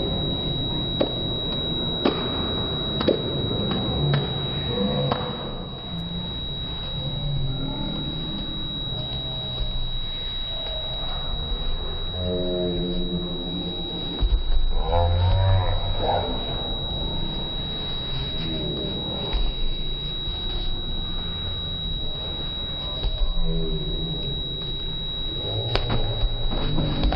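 Slowed-down sports-hall audio from slow-motion footage: deep, drawn-out, pitched-down voices and shouts over a low rumble, with scattered knocks and a steady high whine throughout.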